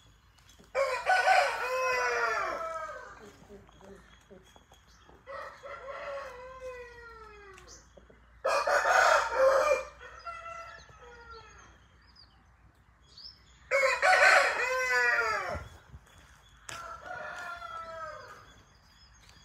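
Aseel roosters crowing: five crows in turn, three loud and close and two fainter, each call falling in pitch as it trails off.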